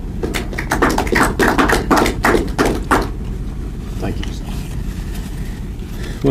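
Footsteps of a man walking across a room: a quick, even run of about a dozen short taps over the first three seconds, then a steady low room hum.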